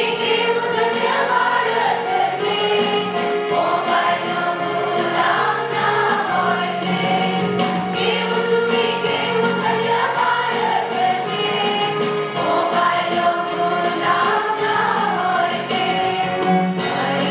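A small youth choir of mixed voices singing a Christian song together into one microphone, over an accompaniment with a steady beat.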